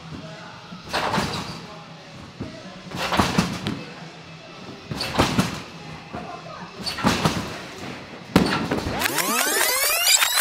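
A trampoline bed thumps each time a gymnast lands bouncing high, about once every two seconds. Near the end a louder sweeping sound with rising and falling pitch comes in.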